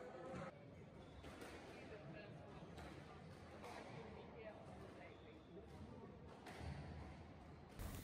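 Near silence: very faint background voices with a few faint knocks.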